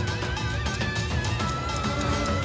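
Background music with a wavering, vibrato melody line over a steady beat.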